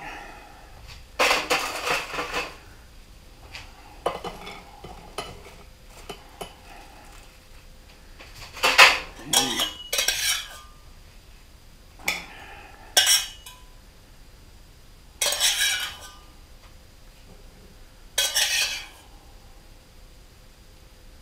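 A metal spoon scraping and clinking against a saucepan and china plates as food is dished out, in a series of short bursts every few seconds, the loudest about nine seconds in.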